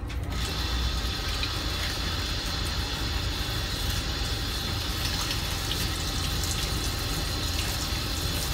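Handheld shower sprayer running steadily, its water spray hissing onto a lathered small dog and splashing in a plastic grooming tub as the shampoo is rinsed off.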